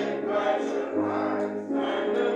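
Church congregation singing a hymn together, with held notes over a sustained low bass accompaniment that changes pitch about once a second.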